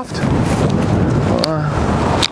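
Strong wind blowing across the microphone: a steady, deep rushing noise, with a brief spoken sound about halfway through.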